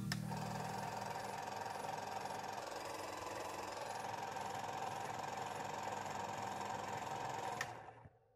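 A small machine running with a faint, steady whir, starting with a click and stopping with another click near the end.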